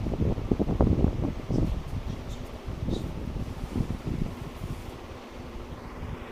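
Handling noise from a phone camera being moved and jostled: irregular low rumbling and bumps, loudest in the first two seconds and easing off, with a few small clicks over a faint steady room hum.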